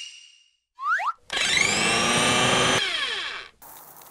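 Blender sound effect: two quick upward-sliding tones about a second in, then a blender running loudly for about a second and a half before winding down with falling pitch. A faint hiss follows near the end.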